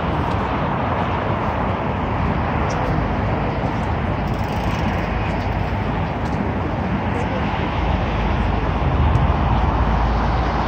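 Steady hiss and rumble of multi-lane expressway traffic passing below, swelling a little near the end.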